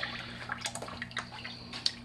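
Small recirculating pump filling a tub of tap water: water trickling and dripping in, with irregular drips and splashes over a steady low hum.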